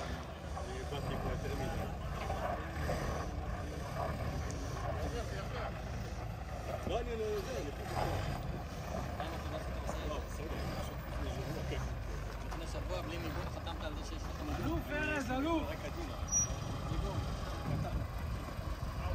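An off-road vehicle's engine runs with a steady low rumble while it crawls over rocky ground, with people's voices in the background.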